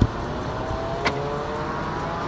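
Car cabin noise while driving: a steady engine and road rumble with a faint whine that slowly rises in pitch as the car picks up speed. A short sharp click about a second in.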